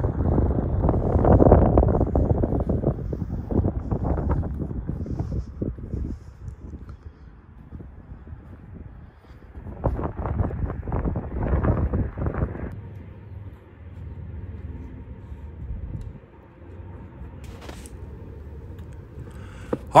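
Wind buffeting the microphone outdoors: a low rumbling rush that gusts strongest in the first few seconds and again about ten seconds in, easing in between.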